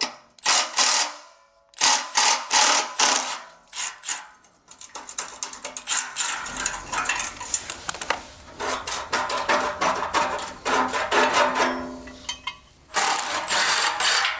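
Metal clinks of an exhaust tip and its clamp being handled, then a cordless electric ratchet running on the tip clamp bolt: a rapid clicking whir over several seconds in the second half.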